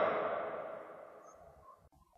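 The echoing tail of a man's narrating voice dies away over about a second, then near silence.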